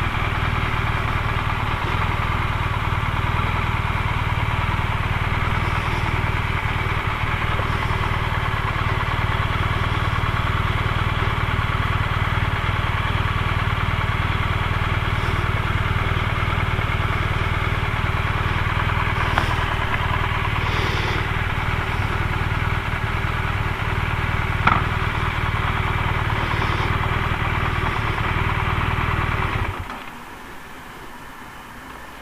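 BMW R1200RT's flat-twin boxer engine running steadily at low revs as the motorcycle creeps into a parking bay, then switched off at the very end.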